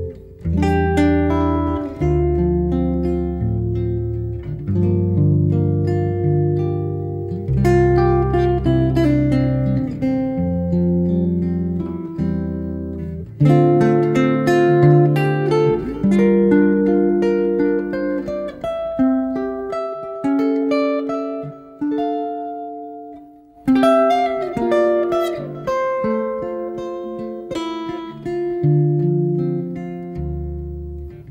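Instrumental background music of plucked strings, its notes ringing and fading as the chords change every second or two, with a short break a little over two-thirds through.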